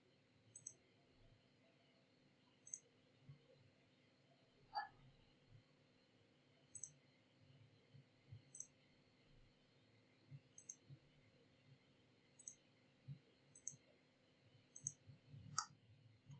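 Faint computer mouse clicks, about eight spaced irregularly a second or two apart over quiet room tone, with two slightly louder ticks, one about a third of the way in and one just before the end.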